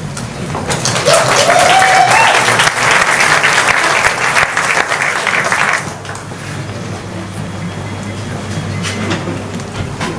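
Audience applauding for about five seconds, then dying away to quieter hall noise.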